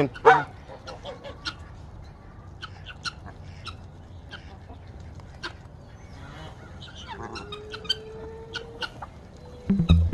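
A mixed backyard poultry flock of chickens, geese and a turkey feeding, giving scattered short clucks, calls and clicks. A single held tone of about a second and a half sounds near the end.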